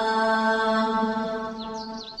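A voice holding one long sung note in an Islamic devotional chant, the note fading away toward the end, with a few bird chirps coming in just before it ends.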